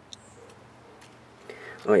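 A few light clicks of hard plastic toy parts being handled, the sharpest just after the start; a short spoken 'oh' comes at the very end.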